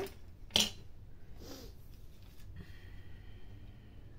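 One sharp click of a clear plastic craft piece handled on the table, followed by a soft hushing sound and then quiet room tone.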